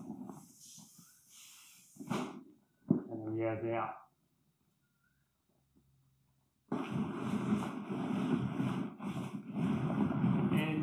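Heavy canvas swag being handled and folded on a concrete floor, with a dense, uneven rustling that starts abruptly about two-thirds of the way in.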